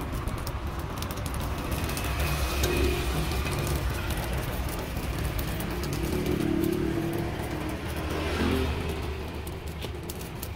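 Road traffic passing, with vehicle engines swelling louder a few times over a steady low rumble.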